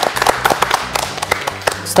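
A small studio crowd applauding: many hands clapping, dense and irregular, thinning out near the end.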